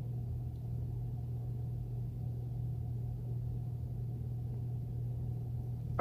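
A steady low background hum, even throughout, with no other distinct sound.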